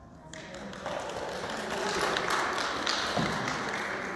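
A violin's last note dies away, then the congregation breaks into applause: a growing wash of hand claps and taps mixed with murmuring voices.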